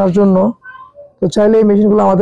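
A person's voice talking, with a short pause near the middle; no machine sound stands out.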